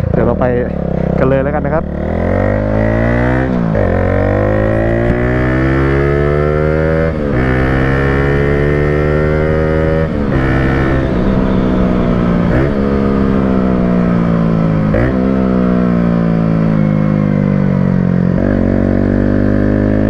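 Honda Sonic motorcycle with a swapped-in single-cylinder, four-valve Honda CBR150 engine, breathing through an exhaust fitted with a silencer, pulling hard. The revs climb and then drop sharply every two to three seconds, about six times, as it shifts up through the gears.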